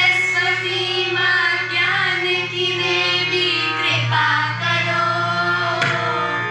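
A group of school students singing a song together into microphones, with held, gliding sung notes over a steady low drone from a harmonium.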